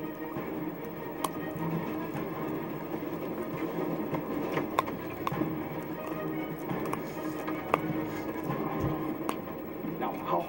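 Background music from a television, with a few sharp clicks of a dog's teeth gnawing a chew stick.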